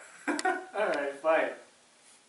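A man's voice: three short vocal sounds in quick succession, about half a second apart, too unclear for words.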